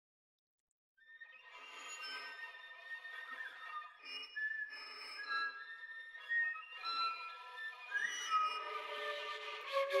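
Contemporary chamber music beginning about a second in: soft flute tones swelling and fading, a singer whistling approximate pitches with short gliding figures, over a quiet granular bowed violin sound. The texture thickens and grows louder toward the end.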